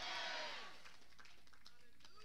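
A congregation's faint shouts answering from across the hall, fading within about the first half second, then a low murmur of voices.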